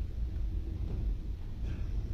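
Low, steady rumble of hall room noise with faint scattered sounds, and no music playing.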